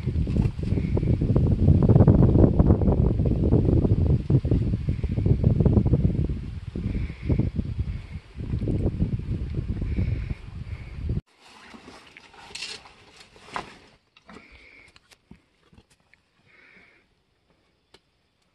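Loud, gusty low rumble of wind buffeting the phone's microphone. It cuts off abruptly about eleven seconds in, leaving quieter scattered clicks and scrapes.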